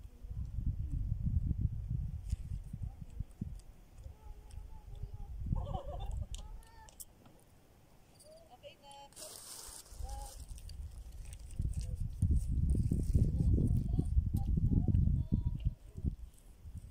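Wind buffeting the microphone in irregular gusts, loudest at the start and again over the last few seconds. Faint distant voices come through in the lull midway, with a brief rustle about nine seconds in.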